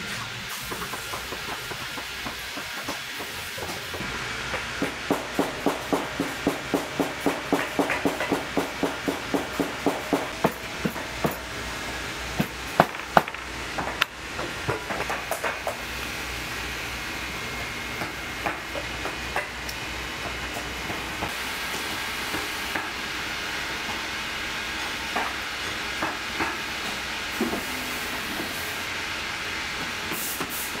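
Leather boot being worked with shop tools: a run of regular ticks, about four a second for several seconds, then a few sharper clicks, over a steady hiss.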